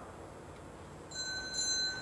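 A bell rings once about a second in, one clear high tone that rings on steadily.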